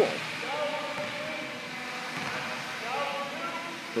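Electric propeller motors of a 15-foot nylon remote-control blimp whirring, a whine that comes and goes and slides up and down in pitch as the throttle changes.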